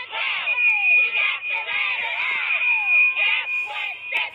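Movie soundtrack played through a TV speaker: overlapping high voices yelling or screaming, their pitch sliding down again and again, with one high steady note held from about half a second in until just before the end.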